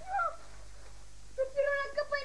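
A short, high cry that rises and falls near the start, then a long, drawn-out, slightly wavering high cry beginning about one and a half seconds in.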